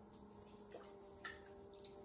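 Near silence: the faint steady hum of a spinning electric potter's wheel, with a few soft wet ticks from hands working slippery clay.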